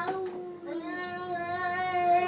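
A toddler's voice sung into a vacuum cleaner tube as one long steady note, wavering slightly and slowly growing louder, after a short loud note right at the start.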